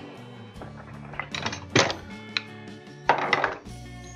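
A few sharp metallic clanks and a short rattle as tools and an old suspension ball joint are handled and picked up from a cluttered tool cart, over steady background music.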